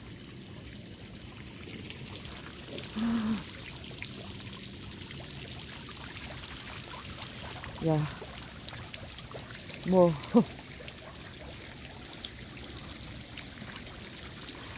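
Steady trickle of water running into a garden pond.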